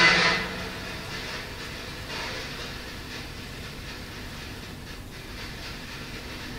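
Steady hiss of a quiet room recorded at high gain, the silence left for a spirit voice to answer. There is a short burst of noise right at the start and a faint, brief sound about two seconds in.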